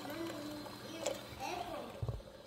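A child's voice, faint and in the background, over a low steady hum.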